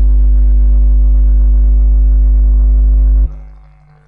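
A loud, steady, low-pitched drone with a stack of overtones, holding one pitch and then cutting off suddenly about three seconds in.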